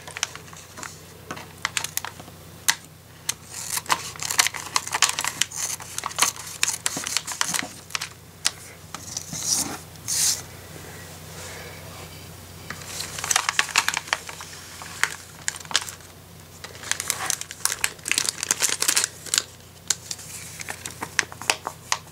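Plastic of a LEGO polybag crinkling and crackling as it is handled, opened and emptied, in runs of short irregular crackles with brief pauses.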